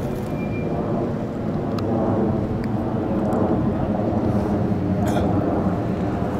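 Steady engine drone of an aircraft passing overhead.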